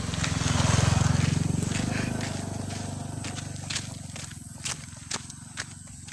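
A motorcycle engine passing by, loudest about a second in, then fading away.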